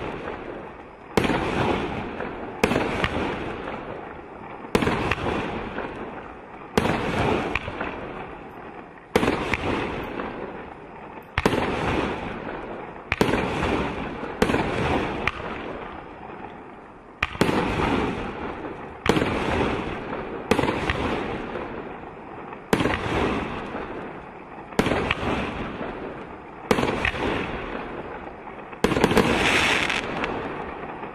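A Benwell 'Midnight Storm' 19-shot firework cake firing its shots one after another, about fifteen sharp bursts roughly every two seconds. Each bang trails off over a second or two before the next shot.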